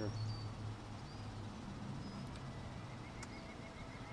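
A few short, high bird chirps over a low steady hum that fades after about a second, with a faint quick run of ticks near the end.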